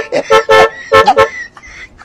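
Keke (auto-rickshaw tricycle) horn tooting in a quick series of short, loud blasts that stop about a second and a half in.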